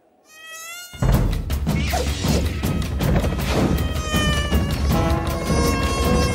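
Animated mosquito's high buzzing whine rising in pitch. About a second in, loud music with sharp percussive hits takes over, and steady droning tones join near the end.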